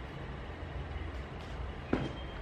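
A steady low background rumble, with one short, sharp knock just before the end.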